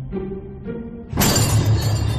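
Dramatic background music, broken about a second in by a sudden loud sound effect of glass shattering that keeps ringing on.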